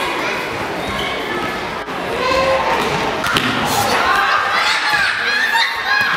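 A handball bouncing and thudding on a sports hall floor amid girls' shouts, echoing in the large hall.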